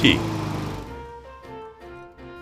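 Honda GCV160 engine of a self-propelled lawn mower running just after an electric start, fading away within the first second. Soft background music with held notes follows.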